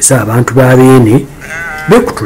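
Sheep bleating: one long, level bleat lasting about a second, then a shorter, higher, wavering bleat near the end.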